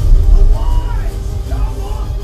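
An action-film soundtrack with music plays loudly through a home theater speaker system, picked up by a microphone in the room. Heavy, deep bass comes from a Velodyne HGS-12 sealed 12-inch subwoofer, its cone visibly moving, and eases slightly after about a second.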